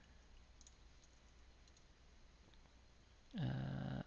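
A few faint keystrokes on a computer keyboard over low room tone, then a man's drawn-out hesitating 'uhh' starting shortly before the end.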